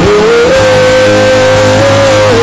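Live worship band music: a loud lead note slides up into pitch and is held steady over a sustained low bass and chords.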